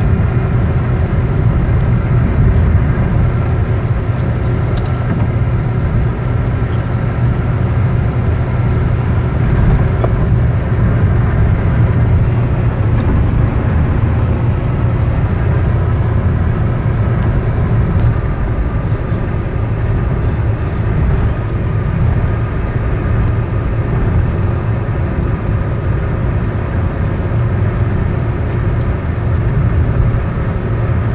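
Steady drone of a car cruising at highway speed, heard from inside the cabin: a low engine and tyre rumble on the road surface, with a few faint ticks.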